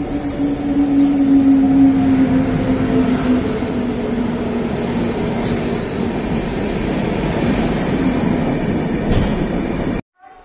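Indian Railways passenger train moving past along the platform: coach wheels rumbling steadily on the rails, then a WAP-7 electric locomotive going by. A squealing tone slowly drops in pitch over the first three seconds or so.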